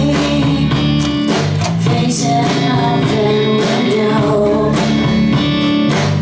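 A live rock band playing: electric guitar and electric bass with drums, loud and steady, heard from within the audience.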